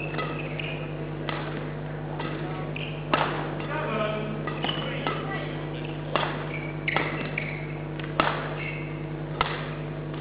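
Badminton rally: rackets strike a shuttlecock with a sharp crack every second or so, and shoes squeak briefly on the court floor between hits. A steady low hum from the hall runs underneath.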